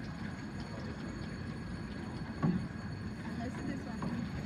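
Train station hall ambience: a steady low rumble with indistinct voices, and one short louder sound about two and a half seconds in.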